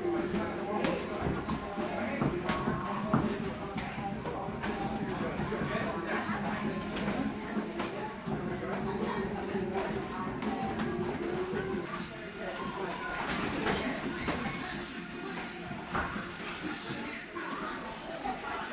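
Music and voices in a gym, with irregular sharp smacks of boxing gloves landing during sparring.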